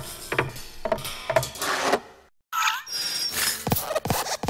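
Sound effects of an animated logo intro in which a desk lamp hops over the letters of a title. A run of short knocks, a brief silence just after two seconds, then short gliding chirps and further knocks.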